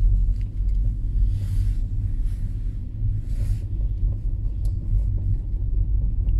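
Low, steady rumble of a car driving slowly, heard from inside the cabin: engine and tyre noise, with two brief hissing swells about one and a half and three and a half seconds in.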